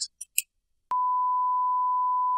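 A steady 1 kHz test tone, the reference beep that goes with a colour-bars test card. It starts about a second in, after a few faint ticks and a short silence.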